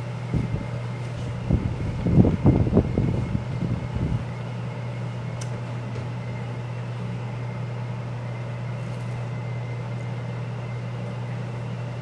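A steady low hum, with a few soft, irregular sounds in the first four seconds.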